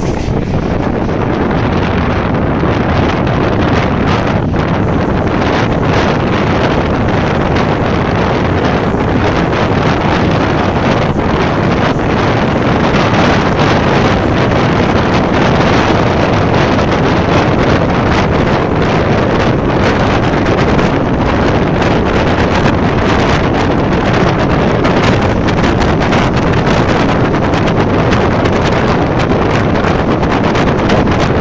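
Loud, steady wind rushing over the microphone held out of the window of a moving passenger train, with the train's running noise underneath.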